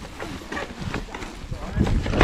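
Mountain bike riding down a rough trail: tyres rolling over dry leaves and stones with rapid rattling and knocking from the bike, and wind on the microphone. It gets louder near the end as the ground gets rougher.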